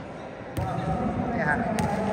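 Voices of players and spectators echoing in a large indoor futsal hall, with thuds of a futsal ball bouncing on the court and a sharp click near the end.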